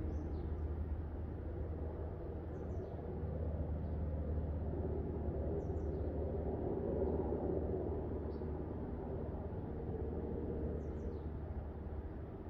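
Steady low hum of outdoor background noise, with a few faint, short, high bird chirps scattered through it.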